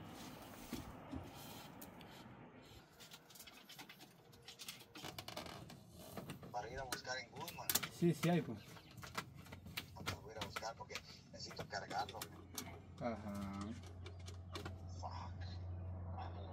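Faint clicks and small knocks of hands working wires and circuit breakers in an air handler's electric heat kit panel. A low steady hum comes in near the end.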